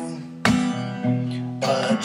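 Music: a guitar strummed, two chords about a second apart, each left ringing, in a gap between sung lines.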